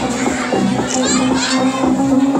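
A crowd of children shouting and chattering over background music with a steady low drone.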